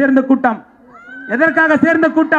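A man's raised, high-pitched voice shouting into a microphone through a loudspeaker system, in two phrases with a short pause between.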